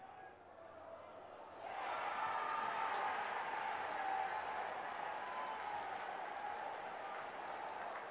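Football stadium crowd noise from match highlights. It is faint for the first couple of seconds, then swells into a steady crowd din that holds.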